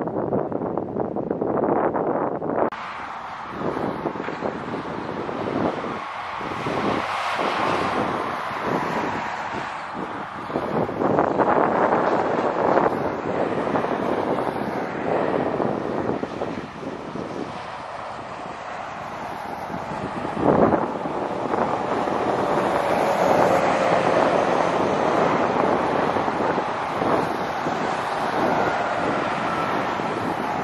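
Highway traffic passing at speed, cars and a semi-trailer truck, with tyre and engine noise swelling and fading as vehicles go by and one pitch falling as a vehicle passes. Wind buffets the microphone, with one sharp knock about two-thirds of the way through.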